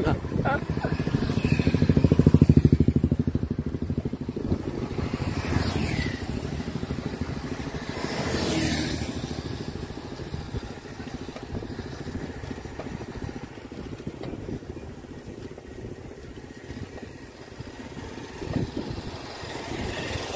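Motorcycles passing close on the road, the loudest about two seconds in with its engine pulsing, a second one going by around eight seconds in. Lower, steady traffic noise fills the rest.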